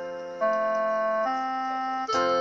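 Karaoke backing track in an instrumental interlude: electronic keyboard holding sustained chords, moving to a new chord about half a second in and again a little past the middle.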